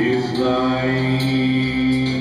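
A man singing a worship song into a microphone, holding one long, steady note, with guitar accompaniment.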